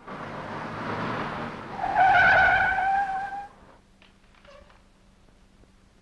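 A car comes in fast, its engine and tyre noise starting suddenly, then its tyres screech in one steady squeal for about a second and a half as it brakes, cutting off about halfway through.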